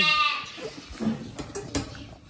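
A calf's long bleat that falls in pitch, holds, then wavers and ends just after the start. Faint knocks and rustling follow.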